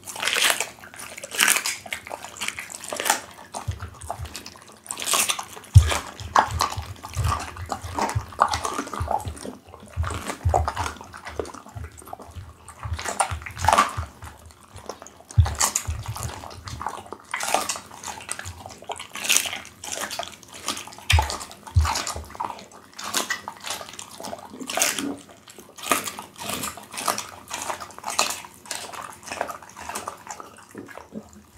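Pit bull chewing raw meat and licking its mouth close to the microphone: a continuous, irregular run of wet mouth clicks with occasional low thumps.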